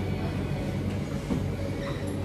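Steady low machine hum with a faint, even background of room noise.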